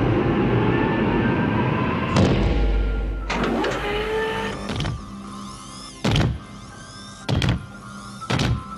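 Film sound effects of a power-loader exoskeleton. A heavy clank comes about two seconds in, then electric servo whines that glide up and down as its arms move. From about six seconds on there are short loud mechanical whirs roughly once a second as it moves, over background music.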